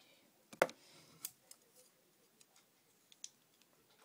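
Scissors snipping fishing line: one sharp click about half a second in and a second about a second in, then a few faint ticks.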